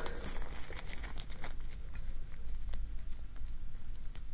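Metal loop-ended comedone extractor scooping a white plug out of a practice pimple pad: a run of small, irregular clicks and crackles from the tool working the soft material.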